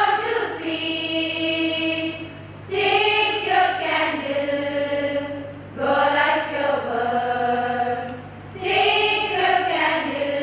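A choir of young women singing slowly together in unison, in long held notes. The phrases are separated by short breaths, roughly every three seconds.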